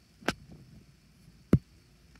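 Quiet room tone broken by two short, sharp knocks about a second and a quarter apart, the second louder.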